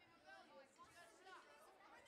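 Faint, indistinct chatter of many people talking among themselves at once: an audience waiting for a concert to begin.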